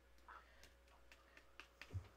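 Near silence with a few faint clicks and taps from a palette knife scooping texture paste out of a jar and laying it onto a stencil, ending in a soft low thump.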